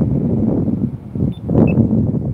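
Wind rumbling on a phone microphone outdoors, with a couple of faint, short high chirps about one and a half seconds in.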